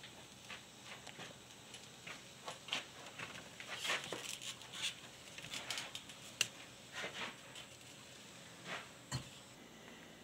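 Faint, scattered clicks and light knocks from a wheeled pressure sandblaster pot and its hose being handled and rolled across a concrete floor, with one sharper click a little past the middle.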